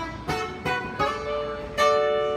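Acoustic guitar strummed, a few chords each struck and left to ring, with no singing over them.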